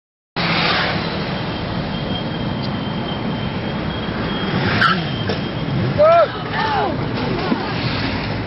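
Steady wind and road noise with motorcycle engine hum from riding along behind a group of motorcycles, a sharp crack about five seconds in, then loud shouts around six and seven seconds in as the riders go down.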